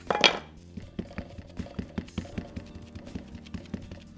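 A plastic-cased VersaMark ink pad being dabbed again and again onto a clear acrylic stamp block, a rapid run of light taps about four or five a second, after one louder clack at the very start.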